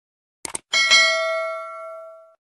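A quick double click, then a single bell strike that rings out and fades over about a second and a half.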